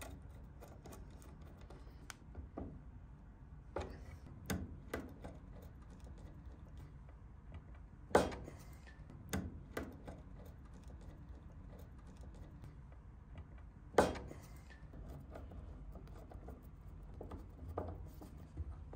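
Scattered clicks and taps of an insulated screwdriver and metal ring lugs on a terminal block as power cables are fastened down, with two sharper clicks about eight and fourteen seconds in, over a low room hum.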